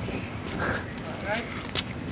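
Faint voices talking in the background, with a few short, sharp clicks.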